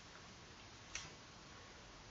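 Near silence with faint steady hiss, broken by a single short click about a second in.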